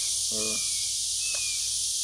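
Steady high-pitched drone of insects in a summer field, with a few short, faint, slightly falling whistles.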